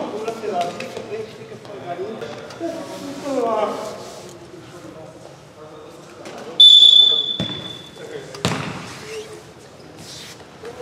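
Referee's whistle, one steady high blast of about a second, signalling the kick-off restart of a futsal match, followed about two seconds later by a sharp thud of the ball being struck. Players' shouted voices come before the whistle.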